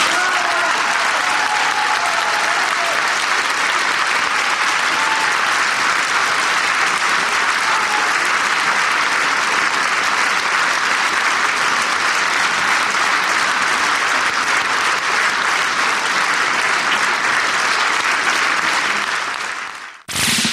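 Concert audience applauding steadily, fading out near the end.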